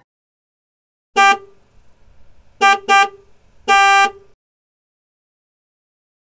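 Vehicle horn honking four times: a short toot, then a quick double toot, then a longer honk of about half a second.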